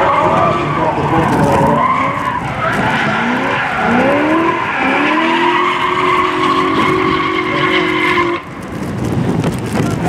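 BMW E30 drift car's engine revving hard, its pitch sweeping up and down as the throttle is worked through a sideways slide, with the tyres screeching. It then holds a steady high rev for about three seconds before dropping off sharply near the end.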